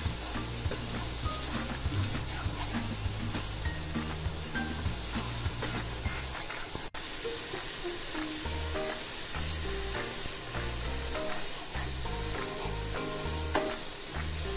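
Onion-tomato masala sizzling in hot oil in a nonstick pan while a wooden spatula stirs and scrapes it, with spices just added. The sound drops out for an instant about halfway through.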